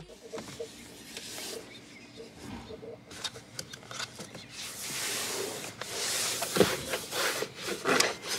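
Disinfectant wipe rubbing over a car's interior door panel, with scattered light clicks and knocks from handling the trim. The rubbing gets louder and hissier about five seconds in.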